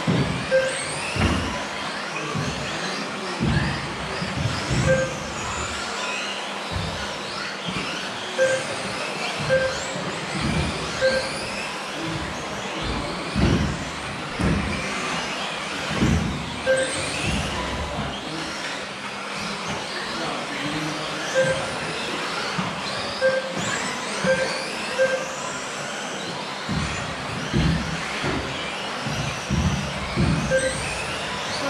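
Electric 1/10-scale off-road RC buggies racing: many motor whines rise and fall as they accelerate and brake, with frequent low thumps. Short steady beeps at irregular intervals come from the lap-timing system as cars cross the line.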